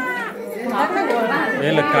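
A group of women's voices overlapping, singing a cradle song together with chatter, one voice holding a steady note near the start.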